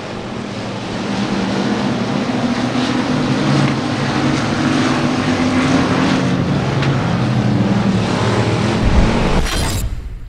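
Several Factory Stock dirt-track race cars running at speed together, a steady blend of engine notes. About nine seconds in, a rush of hiss and a deep boom from a transition sound effect.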